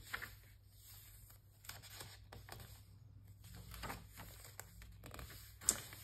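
Faint rustling and light taps of paper pages being handled and turned in a hand-bound journal, with a sharper paper flick just before the end.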